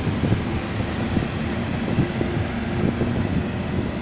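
Freight train of open wagons rolling past on the track, its wheels knocking irregularly over rail joints over a steady rumble.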